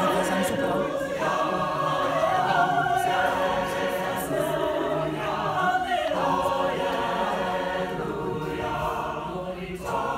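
Mixed choir of men's and women's voices singing together in sustained, held harmony.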